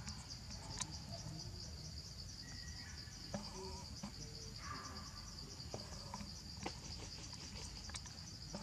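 A steady insect chorus: a high, evenly pulsing trill that runs on without a break, with a few sharp clicks about a second in, near the middle and near the end.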